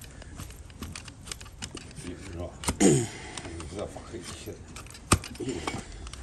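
Large flat steel hoof-paring blade shaving horn from a donkey's hoof: a series of short scraping cuts and clicks, with a louder scrape about three seconds in.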